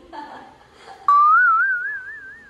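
A whistle that starts suddenly about a second in, slides up in pitch, then warbles rapidly up and down as it fades.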